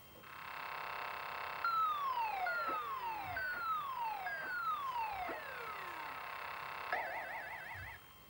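Simple computer-generated electronic sound effects played through a television speaker: a steady buzzing tone, then four descending whistles, each ending in a short click, and a fast warbling trill near the end.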